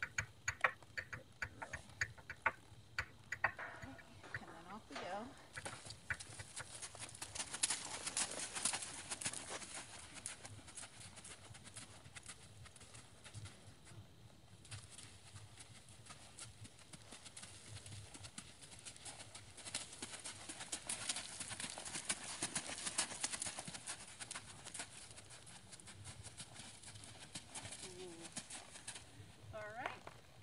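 A horse moving under a rider on a dirt pen, heard faintly: hoof sounds and sharp clicks in the first few seconds, then a steady hiss with scattered ticks. A faint voice comes through now and then.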